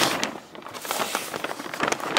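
Clear 6-mil plastic sheeting on a small greenhouse crinkling and rustling in irregular crackles as its overlapping flaps are handled.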